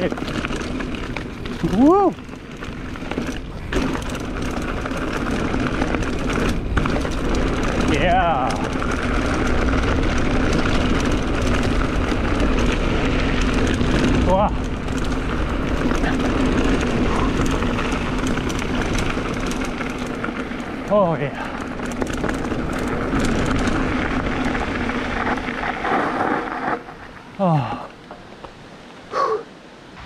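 Mountain bike descending a dirt forest singletrack: steady wind buffeting on the camera microphone with tyre roll and bike rattle, broken by a laugh and a "wow" about two seconds in and a few other brief rising or falling pitch glides. The noise drops away near the end as the bike slows.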